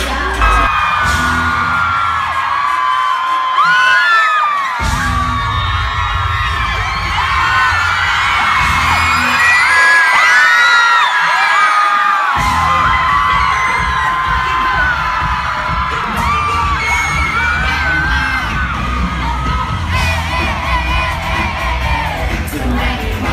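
Live pop concert music with heavy bass, recorded on a phone from inside the crowd, with fans screaming and whooping over it throughout. The bass cuts out twice for a few seconds at a time, leaving the screams on top.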